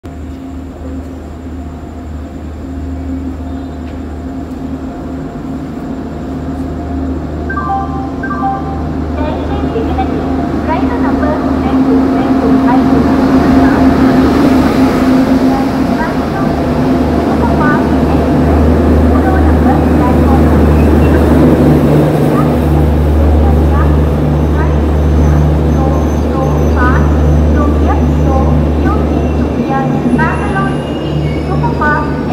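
WAP-7 electric locomotive hauling a passenger train into a platform: a low hum and rolling rumble that grow louder over the first dozen seconds as the locomotive comes up and passes. The coaches then roll by steadily, with many short wheel and brake squeals.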